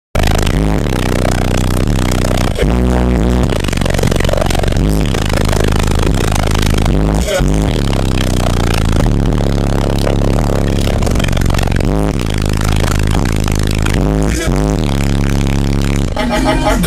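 Bass-heavy music played at extreme volume through a car audio system's subwoofers, the low bass notes stepping from pitch to pitch. The steady loudness fills the whole stretch.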